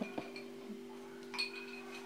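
Faint clinks and small sounds of a man drinking from a glass, over a steady low hum.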